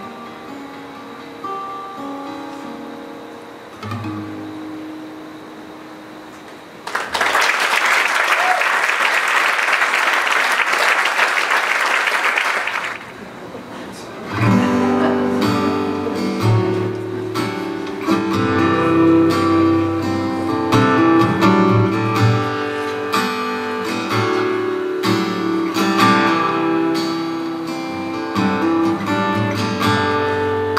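Acoustic guitar's last notes ringing out and fading, then about six seconds of audience applause, then the guitar starts a fingerpicked intro that runs on as the next song's accompaniment.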